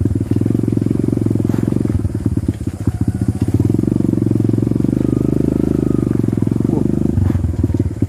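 Motorcycle engine running close by at low speed, with a rapid, uneven firing pulse that dips and loosens briefly about two seconds in.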